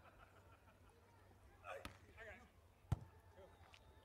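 Two sharp slaps of a beach volleyball struck by hand, a little over a second apart, the second louder: a serve and then the pass that receives it, against a near-silent background.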